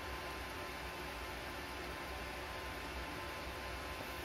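Steady, even hiss with a faint low hum and a thin steady tone, unchanging throughout: background noise with no welding arc burning.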